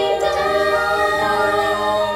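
Children's choir singing sustained notes.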